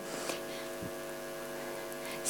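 Steady electrical mains hum, a constant stack of even tones with faint hiss underneath.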